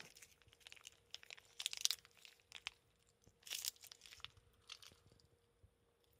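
Foil-lined snack wrapper crinkling and crackling as food is bitten and eaten from it, in short bursts, the loudest about two seconds in and again around three and a half seconds in.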